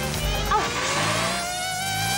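An open jeep's engine revving as it pulls away, its pitch rising steadily.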